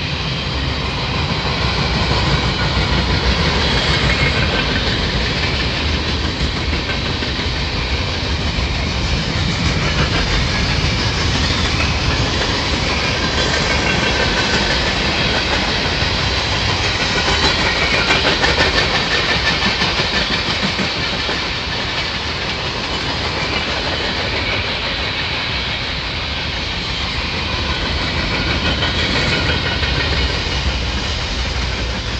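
Freight cars rolling past close by, a covered hopper and boxcars, with a steady rumble of steel wheels on rail and the clickety-clack of wheels crossing rail joints.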